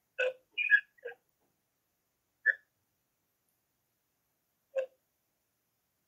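Broken-up voice fragments from an internet call whose connection is cutting out: a few short clipped blips in the first second, then single blips midway and near the end, with dead silence between them.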